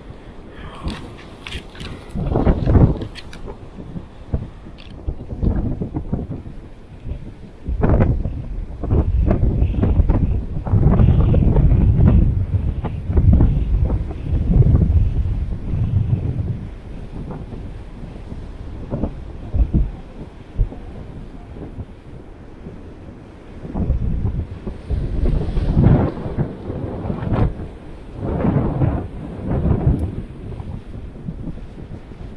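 Strong gusty wind buffeting the camera microphone, with rumbling gusts that swell and ease several times over heavy surf breaking on the rocks below.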